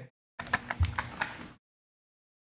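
Handling of a blister-carded toy car: a quick run of small plastic clicks and one soft thump about a second in.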